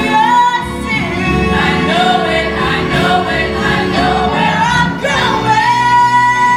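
Stage-musical cast singing as a choir with accompaniment, the voices moving through a phrase and then starting a long held note near the end.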